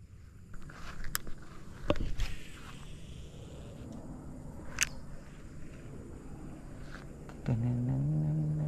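Footsteps through grass on a canal bank and handling of a baitcasting rod and reel: steady rustling, a few sharp clicks and a thump about two seconds in. A low steady hum comes in near the end.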